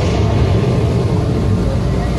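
A loud, steady low rumble from the show's outdoor sound system, a deep sound effect with no clear melody.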